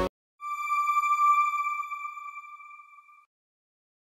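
A single bright electronic chime, a television channel's sign-off ident, sounding about half a second in and ringing out and fading over nearly three seconds.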